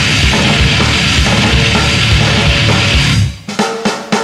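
Grindcore band playing loud and dense, with fast, heavy drumming. About three seconds in, the wall of sound cuts off abruptly. A sparser passage of separate, evenly spaced drum hits follows, about five a second.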